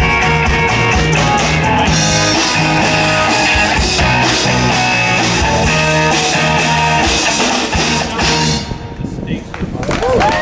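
Live alternative folk-pop rock band playing the closing bars of a song: electric guitars holding chords over a steady drum-kit beat. The band stops together about eight and a half seconds in, leaving a short fading ring.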